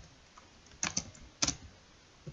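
Keystrokes on a computer keyboard while code is typed: a quick pair of key clicks just under a second in and another pair about half a second later.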